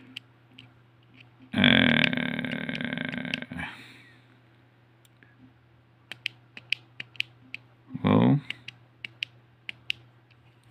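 Buttons on a small DIY handheld keypad clicking, a dozen or so sharp presses in the second half as a word is typed by multi-tapping T9-style. Earlier, a loud voice-like sound lasts about two seconds, and a short one comes near the eighth second.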